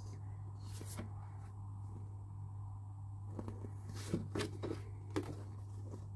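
Sheets of printed craft paper being handled and swapped: a few faint rustles and light taps, mostly in the second half, over a steady low hum.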